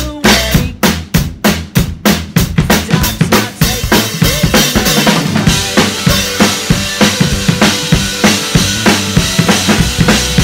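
Acoustic drum kit played along with the song's backing track: steady, regular kick and snare hits, with cymbals washing in densely from about four seconds in.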